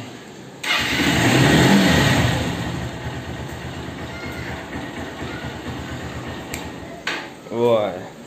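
Honda Hornet 160R's single-cylinder engine started on the electric starter, catching with a brief rev that rises and falls, then settling to a steady idle. The idle cuts off suddenly near the end as the kill switch shuts the engine off.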